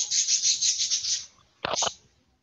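A rasping, rubbing noise with a fast even grain for about a second, followed by a short, louder rustle near the end.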